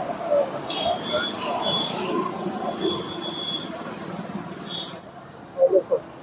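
Handheld breath analyser sounding a high steady tone twice, each lasting about a second, as the driver blows into it for a drink-driving test, over steady street traffic noise.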